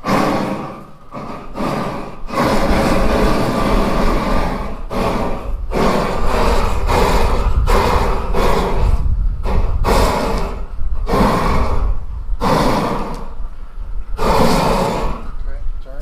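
Handheld gas torch blasting flame onto chiles on a kettle grill to blister their skins. Its rushing, rumbling noise comes in repeated surges with brief dips between them.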